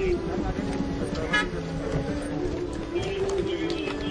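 Chatter from a crowd with car horns sounding over it, held tones that change pitch every second or so.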